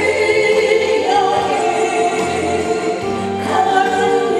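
A woman singing a Korean trot song live into a microphone over instrumental accompaniment.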